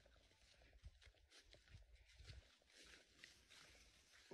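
Faint footsteps and the brushing of grass and weeds as someone walks through overgrown vegetation, in irregular soft steps.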